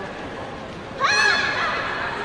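A woman's high-pitched cry about a second in, rising and then falling over about half a second, with a weaker tail after it.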